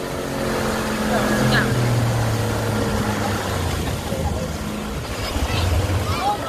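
Motorboat's outboard engine running steadily under way, its drone shifting slightly in pitch, over the rush of wind and churning wake water, with faint distant voices.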